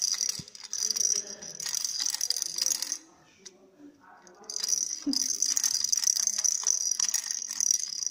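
Baby's plastic ball rattle being shaken, a dense rattling of loose beads. It stops for about a second and a half a little before the middle, then starts again.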